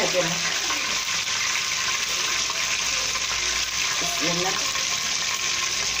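Batter-coated egg chop frying in hot oil in a wok: a steady sizzle of bubbling oil.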